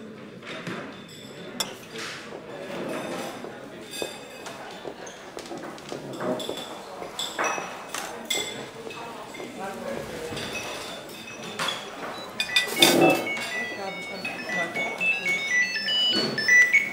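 Canteen ambience: indistinct background chatter with scattered clinks of cutlery and dishes. From about twelve seconds in, a high melody of short notes from the film score comes in.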